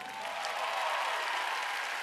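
Audience applauding as the final chord dies away.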